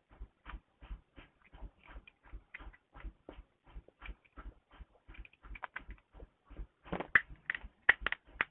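A steady, regular ticking, about three short ticks a second, with a burst of louder, irregular clicks near the end.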